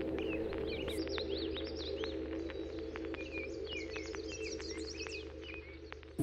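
Ambient background music with steady sustained low chords and many short bird chirps over them, slowly fading down toward the end.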